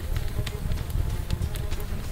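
Fire sound effect for a blazing furnace: a steady low rumble of burning flames with scattered sharp crackles throughout.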